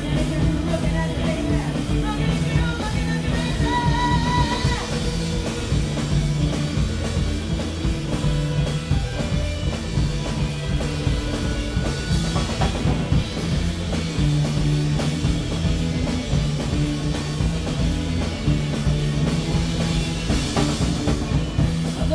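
Live rock and roll band playing at full volume: drum kit, electric bass guitar and a woman's singing voice in parts of it.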